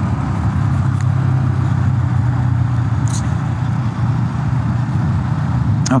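KTM Duke 390's single-cylinder engine running steadily while the motorcycle cruises at city speed, under a steady rush of wind and road noise.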